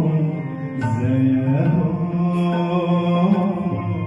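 Live ghazal music on harmonium, violin and tabla: a slow melody of long held notes that step from pitch to pitch, with occasional sharp drum strokes.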